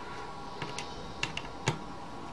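Metal tools clicking and tapping against a circuit board and plastic case as a small electronic device is taken apart: a few sharp, irregular clicks, the loudest near the end.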